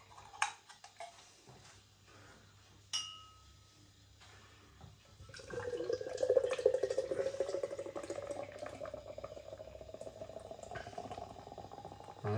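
Nitro draught stout poured from a widget can held upside down into a pint glass: a steady glugging pour begins about five seconds in, its pitch slowly rising as the glass fills. Before the pour there are a few light clicks and one brief knock with a short ring.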